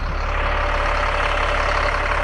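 Caterpillar C7 7.2-litre turbo diesel in a rear-engine school-style bus idling steadily, heard close up through the open engine compartment door.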